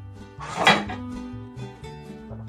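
Background music, with a brief clatter about half a second in as a ladle knocks against a large metal stockpot.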